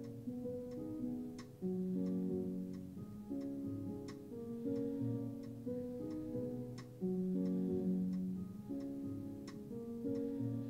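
A Reason software piano playing sustained chords that change every second or so, with a steady metronome click ticking along.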